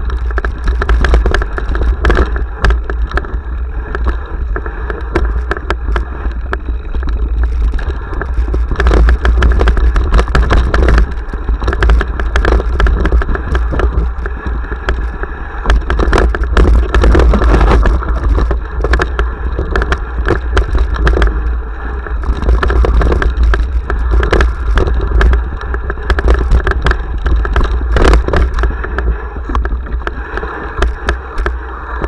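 Mountain bike clattering and rattling over a rocky trail, with irregular sharp knocks and jolts. Under it runs a heavy low rumble of wind and vibration on the action camera's microphone.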